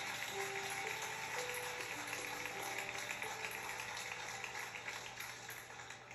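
Congregation applauding steadily, with soft held notes from the band underneath.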